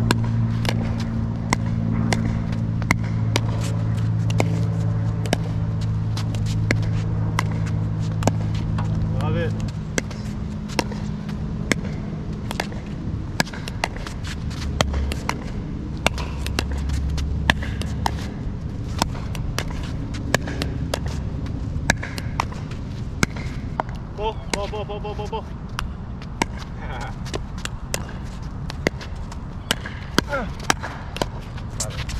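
Pickleball paddles striking a plastic ball in a quick back-and-forth volley rally, sharp pops about twice a second. A low steady hum fades out about ten seconds in.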